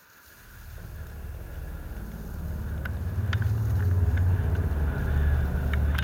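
Low rumble of wind buffeting a body-mounted camera's microphone, with the hiss of a board running over snow, while riding downhill. It builds from quiet over the first two seconds or so and then stays loud, with a few faint ticks.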